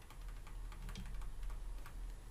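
Stylus tapping on a tablet screen while handwriting: faint, irregular light clicks, a few each second.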